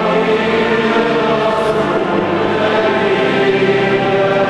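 Choir singing a liturgical hymn in several voice parts, with long held notes, in a large cathedral.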